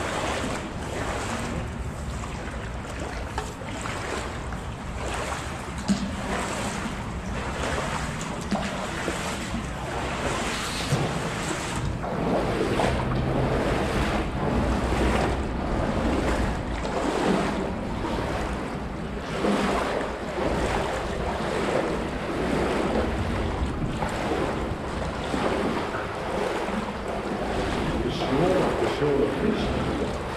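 Wading footsteps splashing through shin-deep water inside a concrete box culvert, with a steady stride rhythm that grows louder and busier about halfway through.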